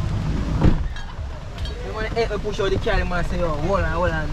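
A voice calls out in drawn-out, wavering tones over a steady low rumble, starting about halfway through.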